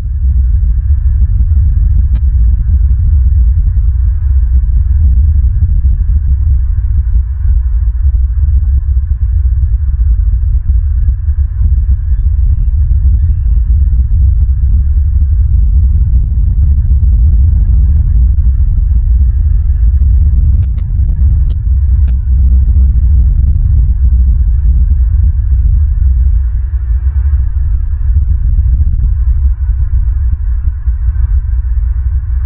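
Wind buffeting an outdoor nest-cam microphone: a loud, steady low rumble.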